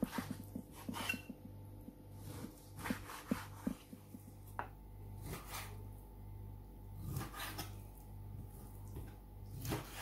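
Kitchen knife cutting raw beef on a wooden cutting board: a quick series of knocks as the blade meets the board in the first few seconds, then a few scattered knocks and softer handling sounds, over a low steady hum.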